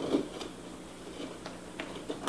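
Light handling sounds of a wooden lid being fitted onto a small wooden box: a soft knock at the start, then a few faint clicks and rubs of wood on wood.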